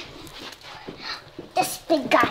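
Quiet room with faint rustling, then a child's brief vocal sounds, breathy and wordless, near the end.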